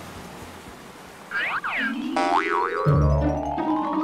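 Comedic soundtrack sound effects: quick springy boing-like pitch glides about a second and a half in, then a long rising whistle-like tone. Background music comes in under it, with a bass line entering near the end.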